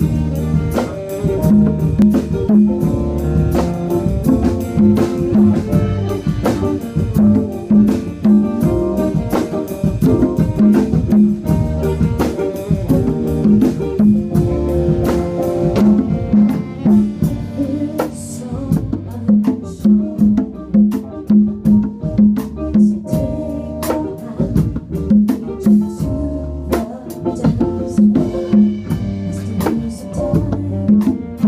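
A band playing: drum kit and percussion keeping a dense, steady beat under guitar, with a repeating low note pattern.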